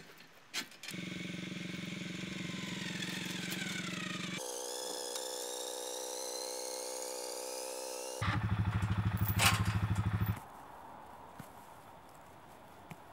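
A motor engine running, in three abruptly joined stretches: a steady drone with a falling whine, then a different, higher-pitched running sound with a rising whine, then the loudest part, a rapid rhythmic pulsing that stops suddenly about ten seconds in.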